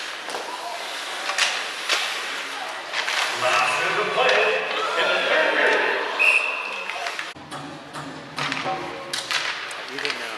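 Ice hockey game in a large arena: sticks and puck knocking on the ice and boards, with voices calling out in the middle and a brief high tone about six seconds in.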